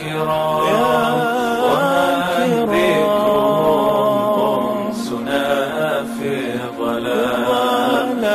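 Nasheed vocals: several voices singing a drawn-out, ornamented melodic line over a steady low drone, with no words the recogniser could catch.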